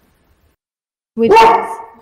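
A dog barks once, loudly, about a second in.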